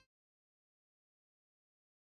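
Silence: dead air with no sound at all.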